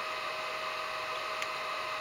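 Steady hiss with a faint, constant high whine from the battery charging equipment and its cooling fan.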